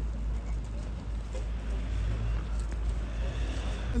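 Outdoor road noise: a steady low rumble of vehicles moving slowly on the road, with no single loud event standing out.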